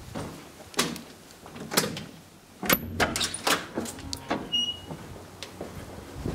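A glass-panelled entrance door being pushed open and swinging shut, with footsteps and a string of sharp knocks and clunks from the door and its latch. The loudest clunk comes a little under halfway through.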